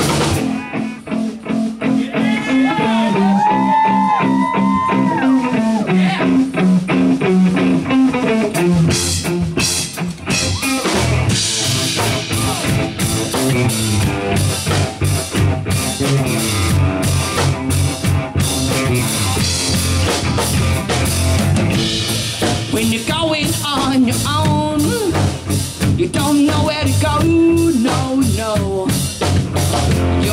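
Live rock band playing an instrumental passage with drum kit and electric guitars, no lead vocal. A few seconds in, a lead line glides up and down in pitch over the band.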